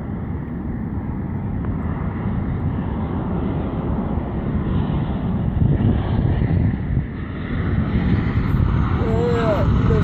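Twin-engine Boeing 737 jet airliner flying low on approach, a steady engine rumble growing louder and brighter as it closes in, mixed with wind on the microphone.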